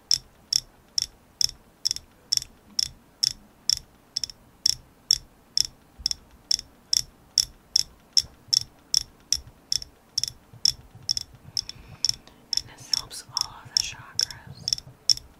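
Long fingernails tapping on a hand-painted oval object in a steady, even ASMR tapping rhythm, about two to three crisp taps a second.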